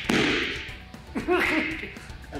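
A sudden swish-like burst at the start, then about a second in a short, rising vocal cry, over background music.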